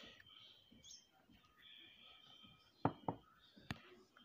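Faint clicks and light knocks of wire leads, a multimeter probe and a small plastic car USB converter being handled and set down on a wooden bench: one click at the start, two close knocks about three seconds in and another shortly before the end.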